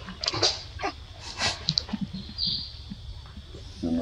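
Baby macaque giving a few short, high-pitched squeaks and whimpers, spaced out with pauses between them.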